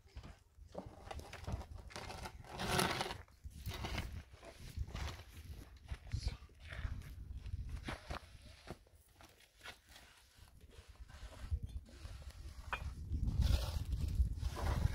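Scattered knocks and scuffs of hand building work: footsteps on rough ground and concrete blocks and tools being handled, with a low rumble underneath.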